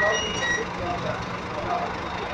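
Marcopolo G7 coach idling with a steady low engine hum, under the voices of nearby people. An electronic beeping tone cuts off about half a second in.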